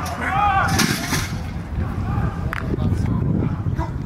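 Unintelligible shouts and yells of football players and coaches at practice, loudest in the first second, over a steady low rumble, with one sharp knock about two and a half seconds in.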